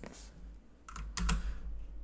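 A few keystrokes on a computer keyboard, in two short clusters.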